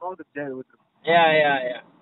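Brief speech, then about a second in a loud, long, wavering drawn-out vowel from a person's voice that lasts most of a second.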